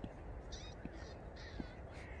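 A bird calling three times in quick succession, short high calls about half a second apart, over a low rumble of wind on the microphone.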